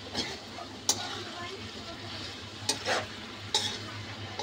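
A steel spoon stirring and scraping potato strips in a hot metal kadai, with the food sizzling as it fries. The spoon clinks sharply against the pan about a second in and again after three and a half seconds, with a longer scrape just before the second clink.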